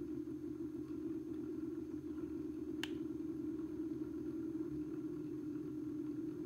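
Stepper motor and planetary gear drive of an electronic expansion valve head, driven fast in turbo mode and heard through a mechanic's stethoscope: a steady hum. A single sharp click about three seconds in.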